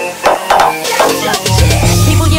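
Electronic future house remix: the deep bass drops out, leaving a few sharp percussive hits, and the heavy bass comes back in about three-quarters of the way through.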